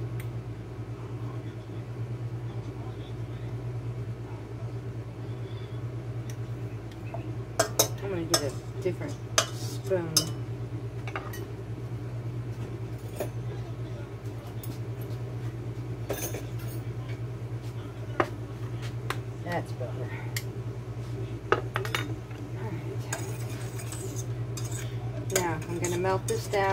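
Metal utensils clinking and knocking against a stainless steel saucepan and dishes in scattered sharp strikes, over a steady low hum. Near the end the clinks come faster as a spoon stirs the potatoes in the pan.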